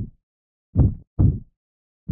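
Slow heartbeat sound effect: low double thumps in a lub-dub pattern. One pair lands about a second in, after the fading tail of the previous beat at the start.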